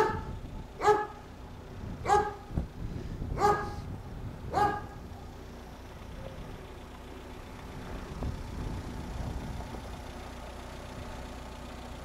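A dog barking five times, about once a second, over a faint steady low rumble of outdoor background noise that continues after the barks stop.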